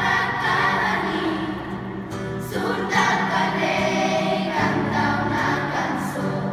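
Children's choir singing together, holding long notes that change pitch every second or two.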